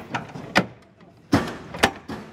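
Sharp metal clanks from the steel hull and hatches of a BTR-80 armoured personnel carrier as crew climb in and handle them: one loud clank about half a second in and two more in the second half, each ringing briefly.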